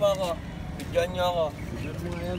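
Two short bursts of people talking, near the start and about a second in, over a steady low background rumble.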